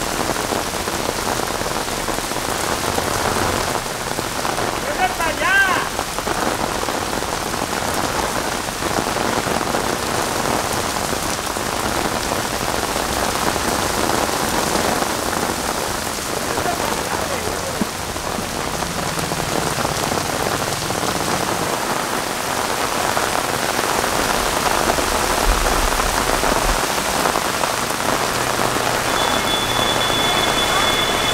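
Heavy rain pouring onto a cobbled street and the cars parked on it, a steady, dense hiss. About five seconds in, a brief high warbling sound rises above it.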